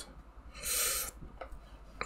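A short, breathy hiss from a person's mouth, about half a second long, around a second in, over a faint low hum.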